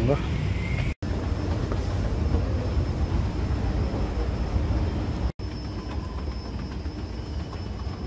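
Steady low rumble of a moving escalator, broken by two brief silent gaps, with a faint high whine joining after the second gap.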